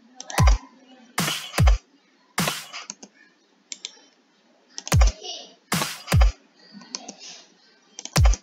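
Trap drum samples in FL Studio's step sequencer sounding as separate hits at irregular spacing: deep kick thuds with a long low tail and bright, sharp clap hits, about seven in all. Light mouse clicks fall between them as steps are set.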